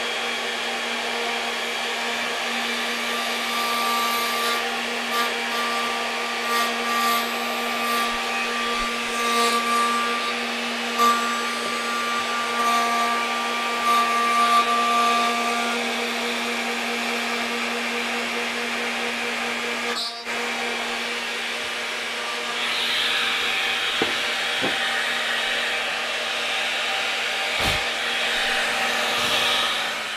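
Table-mounted router running steadily while a wooden guitar-neck blank is pushed over the bit, cutting a channel for a carbon fiber stiffening rod. A higher whine comes and goes while the bit is cutting in the first half. The sound breaks off sharply about twenty seconds in and resumes brighter and noisier.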